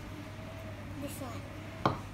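A small ceramic bowl set down on a wooden tabletop: one sharp knock near the end, over faint voices.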